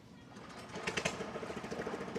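A small engine running with a rapid, even pulse, coming up in level about a second in.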